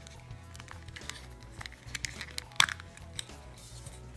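Small clicks and creaks of a hard plastic figure-shaped pencil sharpener being pried open, with one sharp snap about two and a half seconds in as its two halves come apart. Faint background music underneath.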